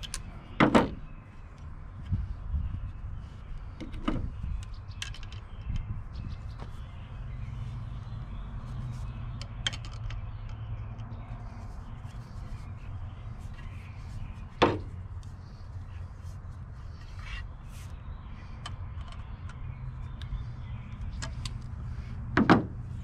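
Sharp knocks and clicks of hand tools and wood being handled while a hanger bolt is turned into a wooden table leg, the loudest about a second in, near four seconds and about fifteen seconds in, over a steady low rumble.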